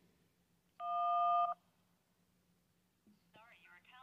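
Smartphone dialer keypad tone for the 1 key, a two-pitch DTMF beep lasting under a second about a second in, as the voicemail number is dialed. A little after three seconds a recorded voice starts coming through the phone's speaker as the voicemail call connects.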